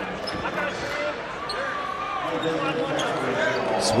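Basketball arena sound: crowd chatter and scattered voices over a steady crowd hum, with a ball bouncing on the hardwood court.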